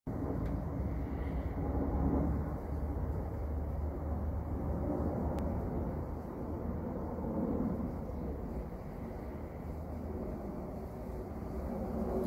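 Steady low rumbling background noise with no distinct events, swelling slightly now and then.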